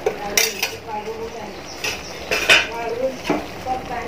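A metal spoon scraping and clinking against the inside of a steel pot while thick mango pickle is stirred, with a handful of sharp knocks spread through the stirring.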